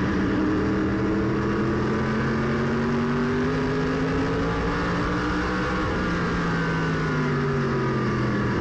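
Modified race car's V8 engine heard from inside the cockpit, running at low, steady speed in line with other cars. Its pitch rises slowly, then eases back down about halfway through.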